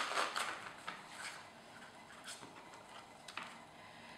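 Folded paper sheets rustling and sliding as a signature is opened and pressed flat, fading within the first moment, followed by a few faint soft paper-handling taps and rustles.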